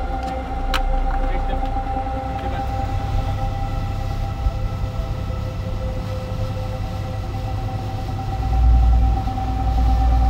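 Motorboat engine running steadily: a low rumble under a steady hum, the rumble swelling briefly near the end.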